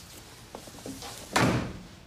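A door shutting with a single heavy thud just past the middle, its sound dying away over about half a second, after a few faint knocks.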